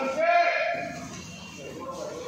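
A raised human voice: one drawn-out shouted call, loudest about half a second in, followed by quieter voices.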